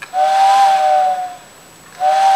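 Vintage TYCO model-railroad steam-locomotive whistle, its fan now driven by a can motor taken from a CD player, giving one blast of a little over a second. It is a steady, breathy whistle tone of two or three close notes over a hiss, and it fades out. The whistle now spins fast enough to sound properly after the motor upgrade.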